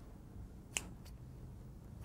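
A fingernail clipper snapping shut once, a single sharp click less than halfway in, over quiet room tone.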